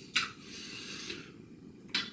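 A sharp clink of a hard object knocked or set down on a hard surface, followed by about a second of soft rustling handling and another short click near the end.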